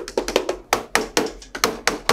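A hand rapidly tapping and slapping on the plastic rail of a hospital bed, about a dozen hollow knocks in two seconds in an uneven rhythm.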